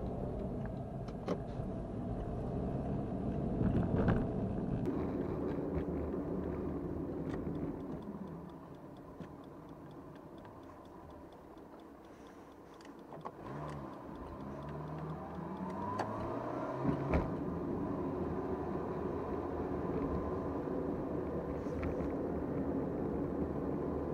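Car engine and road noise heard inside the cabin while driving: quieter for several seconds midway as the car slows, then the engine note rising as it speeds up again. A few sharp clicks in the cabin.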